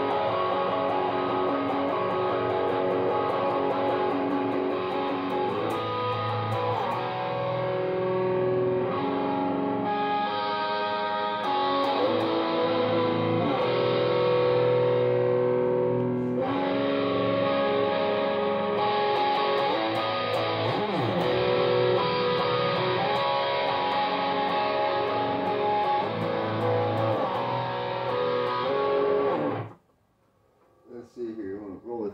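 Ibanez RG2EX2 electric guitar tuned to drop C sharp, played through a Coolmusic Insane Distortion pedal into a Bogner Ecstasy Mini amp and Harley Benton 1x12 cab: heavily distorted riffing with held chords. It cuts off suddenly just before the end.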